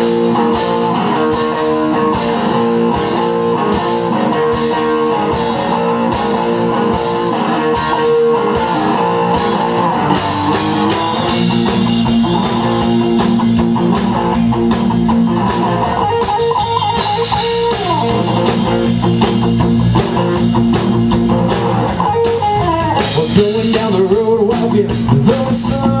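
Live blues-rock band playing the instrumental intro of a song: electric guitar leading over bass and drums, the sound filling out with a stronger beat and bass about ten seconds in. The lead vocal comes in right at the end.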